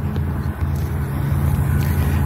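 A steady low rumble of outdoor background noise.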